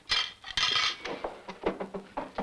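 Cutlery and plates clinking and clattering on a dinner table, busiest in the first second, with a few lighter clinks after.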